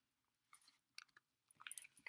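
Faint, scattered clicks and creaks of an iPhone being pressed and pushed into a faux-leather (PU) case, thickest near the end.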